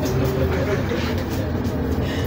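City bus in motion heard from inside the passenger cabin: a steady low engine and road rumble.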